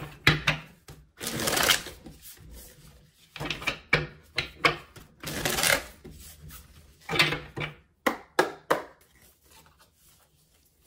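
A deck of oracle cards being shuffled by hand: quick slaps and taps of the cards, with several longer riffling rustles about a second in, near the middle and about seven seconds in.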